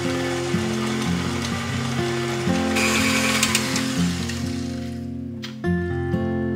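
Background music with steady notes over the motor and beater noise of a KitchenAid tilt-head stand mixer shredding cooked chicken with its flat beater. The mixer noise stops about five seconds in, leaving the music.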